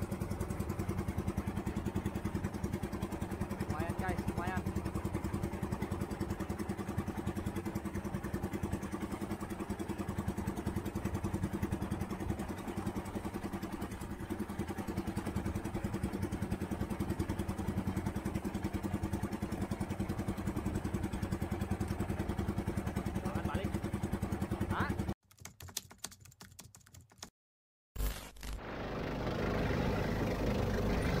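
A small fishing boat's engine running steadily while the boat is under way. About 25 seconds in the sound drops out abruptly for a couple of seconds, then a steady engine drone returns.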